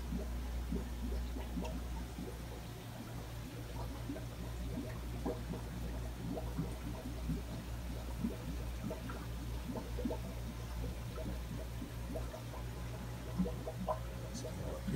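Aquarium air stones and sponge filters bubbling, an irregular patter of small pops, over a low steady hum.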